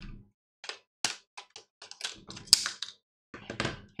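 Stiff clear plastic blister packaging being crinkled and pried open by hand: a string of irregular crackles and clicks, with the sharpest snap about two and a half seconds in.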